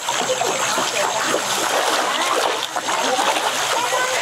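Many fish splashing and splattering at the water surface as they feed on floating pellets, a continuous busy churning with no single standout splash.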